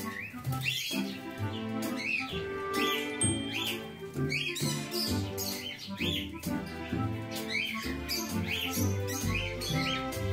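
Background music with held notes and a moving bass line, with short bird chirps heard over it about once a second.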